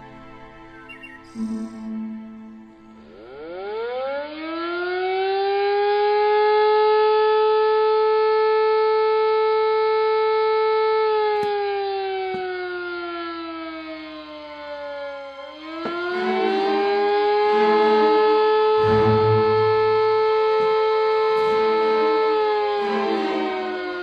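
Mine alarm siren wailing, signalling an accident at the mine. It winds up, holds a steady howl, slides down, then winds up and holds again before falling off near the end.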